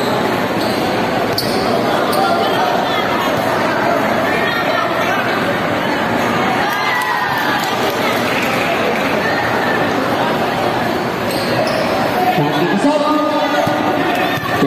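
A basketball being dribbled on a gym's hardwood-style court, with the continuous chatter of many voices from players and spectators around it. The voices grow louder near the end.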